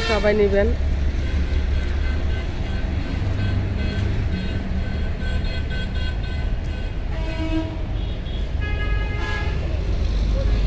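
Road traffic running steadily as a low rumble, with vehicle horns tooting a couple of times near the end.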